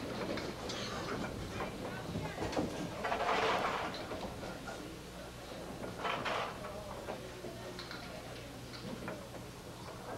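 Candlepin bowling alley ambience: indistinct chatter from the spectators, with a steady low hum underneath and a couple of louder swells of noise about three and six seconds in.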